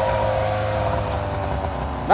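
A motor engine running steadily, its pitch sinking slightly as it eases off, fading near the end.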